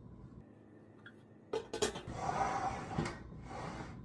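Knocks and a scraping slide as a stainless slow cooker is pushed across a wooden tabletop, starting about a second and a half in.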